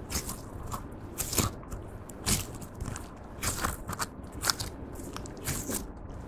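Clear slime being stretched, folded and squeezed by hand to work in lipstick and pearl makeup. It gives irregular sticky pops and crackles, about one or two a second, as trapped air pockets burst.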